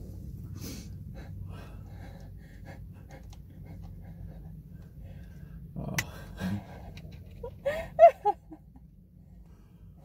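Stifled laughter with gasping, wheezy breaths over a steady low hum in the car cabin. A sharp click comes about six seconds in, and a few short high squeaks of laughter near eight seconds are the loudest sounds.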